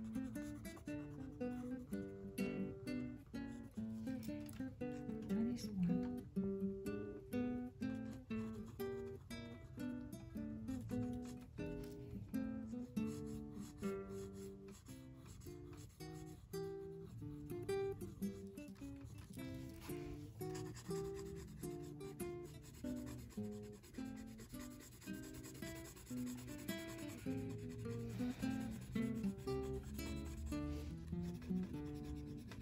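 Background acoustic guitar music: a steady run of short plucked notes. Under it, faint scratching of a graphite pencil shading on paper.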